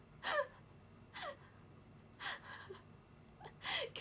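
A woman's voice making four short, breathy sounds without words, about a second apart, each falling in pitch.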